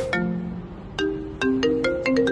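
A mobile phone ringtone playing a melody of short, ringing marimba-like notes, sparse at first and picking up about a second in.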